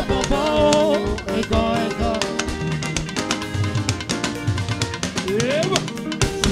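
Live band music with a drum kit keeping a steady beat, and a woman singing through a microphone, her voice strongest in the first couple of seconds. A rising, sliding note comes in near the end.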